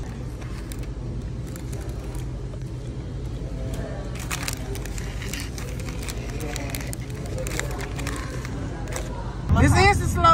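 Restaurant room tone: a steady low hum with faint background chatter and a few light clicks. Near the end a louder voice comes in.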